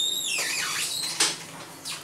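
Hydraulic elevator doors opening on arrival. A pitched whine rises, holds and falls away, and a knock follows about a second in.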